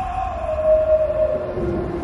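A sustained electronic tone from the front ensemble's synthesizer, gliding slowly down in pitch, with a second, lower held tone sounding briefly near the end.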